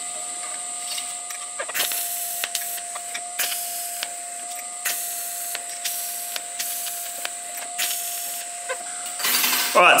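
TIG welder tacking a steel mount plate to a motorcycle rear fender: several short spells of arc hiss, one tack after another, over a steady electrical hum that starts about two seconds in and stops near the end.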